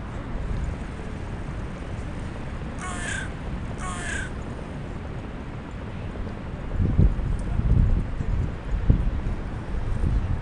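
Two short, harsh bird calls about a second apart. In the last few seconds, low bubbling rumbles from the hookah's water base as smoke is drawn through it.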